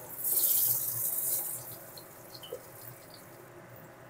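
Potato pieces going into hot mustard oil in a kadai: a sudden loud burst of sizzling hiss that dies down after about a second and a half.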